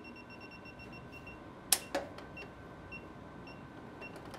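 Handheld circuit breaker finder beeping in rapid short, high pips as its receiver passes over the breakers, stopping about a third of the way in and then giving a few scattered single beeps. A single sharp click just before halfway.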